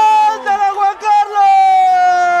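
A male football commentator's drawn-out goal call, his voice held on long notes that slide slowly down in pitch. It breaks into a few short syllables about half a second in, then swells into another long held shout a little past the middle.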